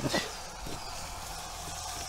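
Steady sizzling of meat and sesame oil frying in a hot cast-iron pot over a wood fire.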